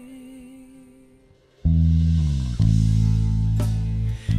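Pop song with electric bass: a held note with vibrato fades out, then the full band comes in loud about a second and a half in, with a five-string Specter Euro 5LX electric bass playing long, low sustained notes and a second accent a second later.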